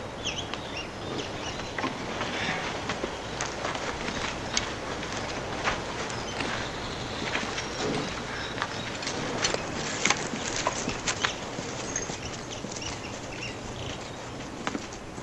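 Outdoor ambience of footsteps on dirt with scattered small clicks and knocks, sharpest around ten to eleven seconds in, and faint bird chirps.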